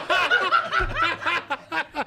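A group of people laughing and chuckling together at a joke's punchline, in short choppy bursts.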